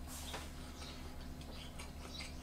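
Faint, irregular small wet clicks of a person chewing a mouthful of rice with the mouth closed, over a steady low hum.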